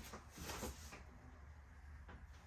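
Faint handling noises: a few soft scrapes in the first second, then quiet room tone.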